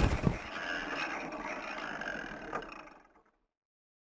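An impact sound effect as the wooden ragdoll figure hits the floor, a sudden thud as the music cuts off, followed by a noisy tail that fades out to silence about three seconds in.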